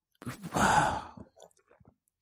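A person sighs: one long, breathy exhale lasting about a second.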